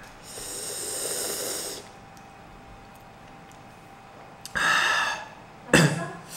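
A man breathing hard through his open mouth, hissing air in and out against the burn of extremely spicy fire noodles: one long breath of about a second and a half at the start, another about five seconds in, and a short one near the end.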